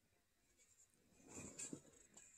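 Near silence, broken about halfway through by a faint, brief rustle with a couple of soft clicks: handling noise from the phone and a hand-held cup being moved close to the microphone.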